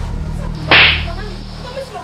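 One sharp, loud slap across a man's face, a sudden crack about two-thirds of a second in that dies away quickly, over a low steady drone.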